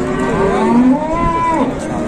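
One long moo from one of the cattle, rising in pitch and then held, lasting about a second and a half.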